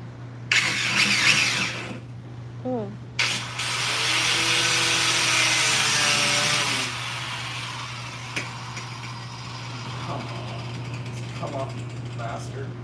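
Angle grinder cutting into a Mustang's rear bumper valance in two passes: a short cut of about a second and a half, a pause, then a longer cut of about three and a half seconds with the motor's whine under the grinding noise. After that the grinder stops.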